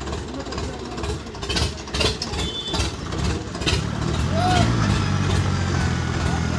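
Tractor diesel engine running, swelling to a steady louder hum about two-thirds of the way through, with voices and a few sharp clicks before it.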